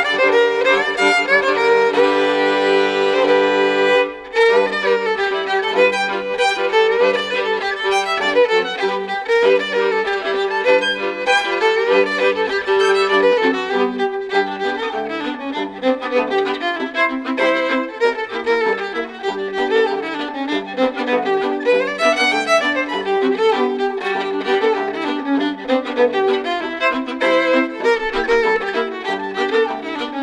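Acoustic violin trio (two violins and a tenor violin) playing an old-time fiddle tune in a lively run of bowed notes, with a momentary break about four seconds in.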